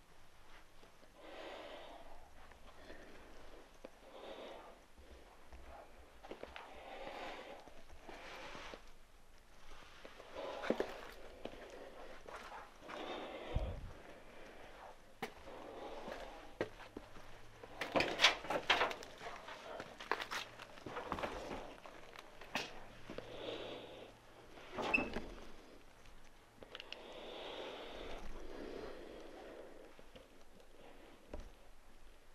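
Footsteps scuffing and crunching over debris and broken drywall on the floor, with a few sharper knocks and clatters around the middle, the loudest a short cluster about two thirds of the way in.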